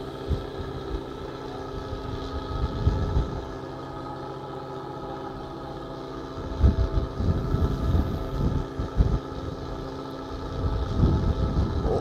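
A fishing boat's engine humming steadily, with strong wind gusting against the microphone in low rumbles several times.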